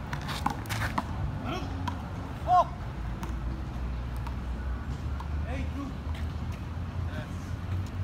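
Outdoor handball court ambience: a few faint slaps of the rubber handball in the first second, a short high-pitched sound about two and a half seconds in, then a steady low rumble of street traffic under faint voices.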